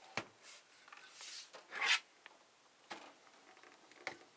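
Rubbing and scraping handling noises as equipment and the camera are moved: a few short swishes in the first two seconds, the loudest near two seconds in, then a single click about three seconds in.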